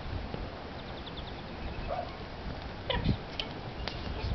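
A dog gives one short vocal sound about three seconds in, over steady outdoor background noise, with a faint shorter sound earlier and a click near the end.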